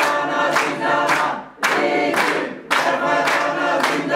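A group of women singing together in unison while clapping their hands. The song comes in phrases, with short breaks about a second and a half in and again near three seconds.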